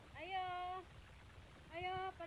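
A cat meowing: one drawn-out meow with a rising start, then a second call beginning near the end.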